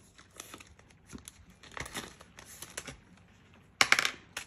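Crinkling of a clear plastic zip pocket in a ring binder as it is handled and £1 coins are slipped in, with light coin clicks. Near the end there is a short, louder clatter of a die rolled into a dice tray.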